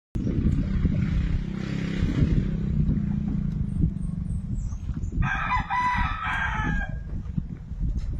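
A rooster crowing once, about five seconds in, for nearly two seconds, over a steady low rumble.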